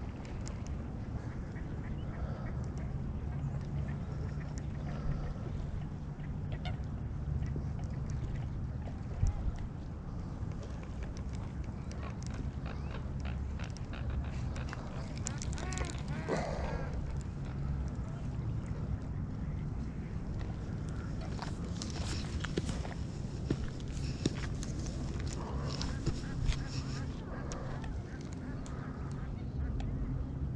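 Waterfowl calling from the pond: one drawn-out call about halfway through and a run of shorter calls later on, over a steady low rumble of wind on the microphone.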